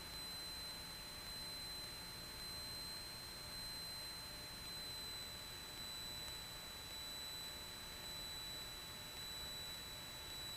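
Faint steady hiss with a few thin, steady high-pitched whine tones: electronic line noise of the audio feed, with no engine or cabin sound coming through.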